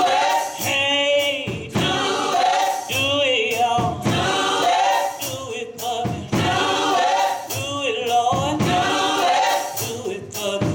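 Gospel choir singing, a lead singer with a microphone carrying the melody over the choir, with sharp rhythmic beats throughout.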